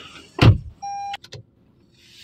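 A car door slams shut with one heavy thump, then a short steady electronic beep and a couple of light clicks.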